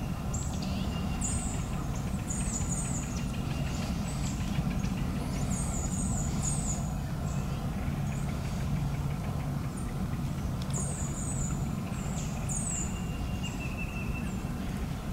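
Small bird calling with short, high chirps that slide downward, in quick pairs and threes every second or two, over a steady low rumble.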